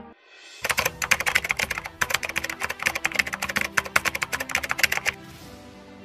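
Rapid, irregular computer-keyboard typing clicks, used as a sound effect as a headline caption types onto the screen, lasting about four and a half seconds over soft background music.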